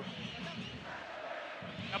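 Stadium crowd noise: a steady, fairly quiet din of many fans in the stands.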